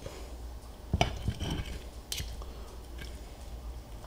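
Serrated steak knife and fork cutting through a cooked steak on a plate, the metal clicking sharply against the plate about a second in and again a little after two seconds, with fainter scrapes between.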